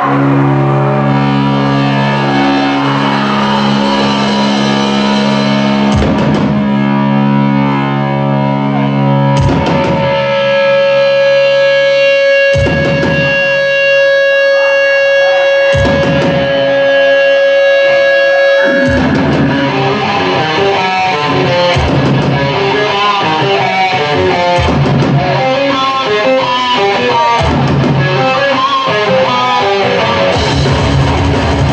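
Live death metal band: distorted electric guitars hold long, sustained chords and then a single long note, punctuated by single drum and cymbal hits every few seconds. A faster, busier riff starts about two-thirds of the way in.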